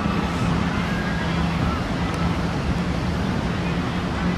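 Steady outdoor rumble of wind on the microphone, with faint distant voices.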